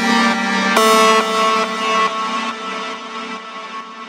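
Uplifting trance synth melody playing back from an FL Studio project at 138 BPM, with no bass or drums: a few long held notes that fade away near the end.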